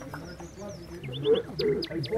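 Small birds chirping in short, high, falling notes, with a quick run of three a little after a second in. People's voices talk underneath, loudest just past the middle.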